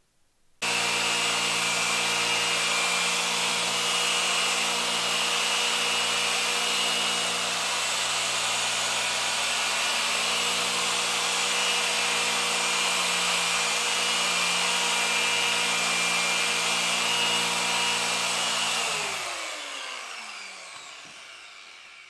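Electric car paint polisher with a foam pad, switched on about half a second in and running at a steady speed as it polishes the car's paint. Near the end it is switched off and winds down with a falling pitch.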